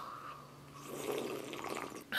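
A person sipping hot coffee from a mug: a faint slurping swell about a second in.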